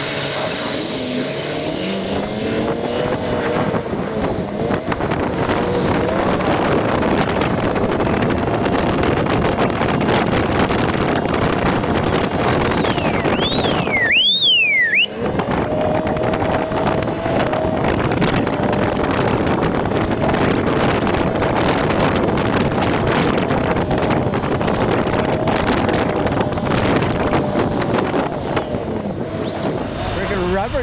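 A vehicle engine running steadily under heavy wind and open-air noise. About halfway through, a brief warbling whistle rises and falls a few times.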